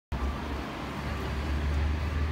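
Fire engine's engine idling: a steady low rumble over outdoor street noise.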